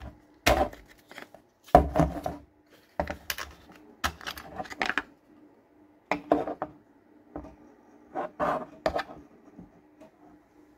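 Hard plastic clicks and clacks from a Bosch 18V battery pack and its 3D-printed Makita adapter being slid off a cordless impact driver, unlatched from each other and set down on a table. The knocks come in irregular clusters, loudest about two seconds in, over a faint steady hum.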